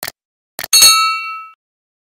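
Subscribe-button animation sound effect: a quick click, a double mouse click a little past half a second in, then a bright bell-like ding that rings out and fades within about a second.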